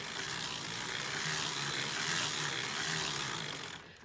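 Hand-cranked circular sock knitting machine running: a steady rattle of the latch needles riding up and down through the cams as the crank turns, knitting rows of the cuff. It stops just before the end.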